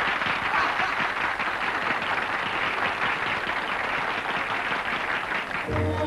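A small crowd applauding: the steady clapping of many hands that carries on until, just before the end, soft orchestral music comes in.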